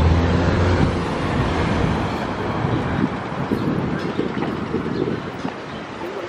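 City street traffic: a vehicle's low engine rumble, loudest at the start and fading after about a second, then steady road noise.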